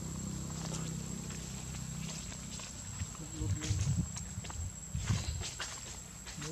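Dry leaf litter rustling and crackling as macaque monkeys move over it, with a few louder thumps in the second half. A low steady hum sits under the first two seconds.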